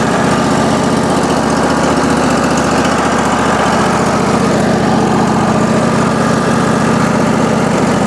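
Wood-Mizer LX150 portable bandsaw mill's engine running steadily at an even, loud level.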